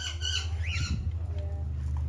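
A bird squawking: short harsh calls in the first half second, then a quick call that rises and falls in pitch about a second in, over a steady low rumble.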